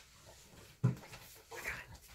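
A single dull thump about a second in, then a brief, faint voice-like sound near the end.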